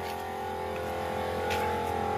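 Small portable tyre air compressor, plugged into the car, running with a steady motor hum as it pumps up a flat tyre that has a puncture.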